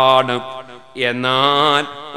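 A man chanting in Arabic with long, drawn-out melodic notes, in the manner of Quran recitation: two sustained phrases with a short pause between them.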